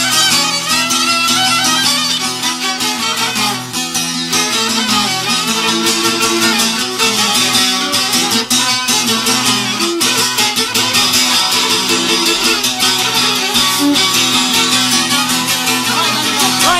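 Albanian folk music: an instrumental passage led by plucked string instruments, with many quick notes over a steady low note and an even rhythm.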